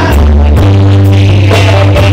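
Live church praise music: a group of singers over keyboard with deep held bass notes and drums.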